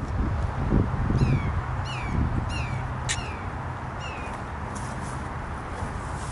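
A bird calling: a run of about five short chirps, each falling in pitch, spaced about half a second to a second apart and stopping about four and a half seconds in.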